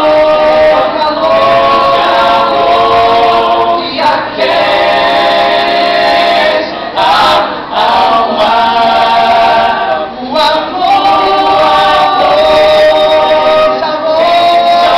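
A cappella vocal jazz ensemble singing: several voices hold chords in harmony, phrase by phrase, with short breaks between phrases about every three seconds.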